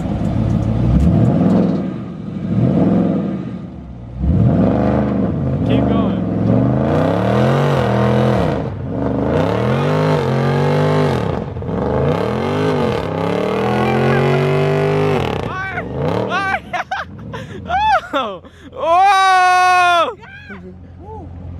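Dodge Charger 392's 6.4-litre HEMI V8 revved hard in repeated rising and falling swells against the held brake during a burnout, spinning the rear tyres into smoke. Near the end, high wavering cries rise over the engine.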